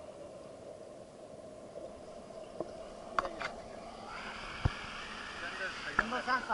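Mountain stream water heard through an action camera held underwater: a muffled, steady rush with a couple of knocks. About four seconds in, the sound opens up and turns brighter as the camera comes up to the waterline beside a small cascade.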